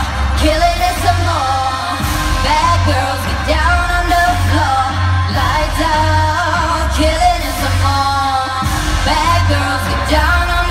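A pop song performed over the arena sound system, with a singing voice over a heavy bass beat that pulses steadily, heard from among the audience.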